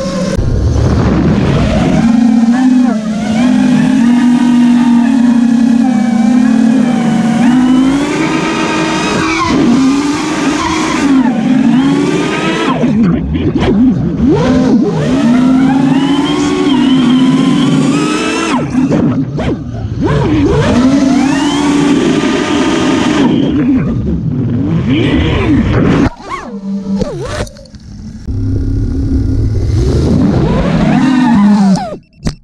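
Home-built FPV quadcopter's brushless motors whining, the pitch rising and falling continuously as the throttle changes in flight. The sound drops out briefly near the end with a few sharp clicks before the whine picks up again.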